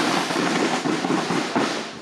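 Marching snare drums of a drum corps played together, a dense, rapid rattle of stick strokes.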